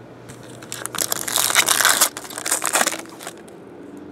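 Foil wrapper of a Topps Chrome trading-card pack crinkling as it is torn open by hand: a dense crackling rustle starting just after the beginning, loudest in the middle and stopping about three seconds in.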